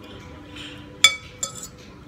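Metal spoon and fork clinking against a ceramic plate while twirling spaghetti. There are two short ringing clinks about half a second apart, and the first is louder.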